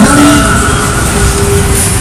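Loud, dense rumbling din of a fairground ghost-train ride, with a few faint held tones over it.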